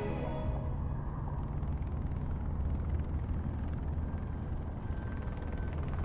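Music fading out, then a steady low rumble of background noise with a faint low hum.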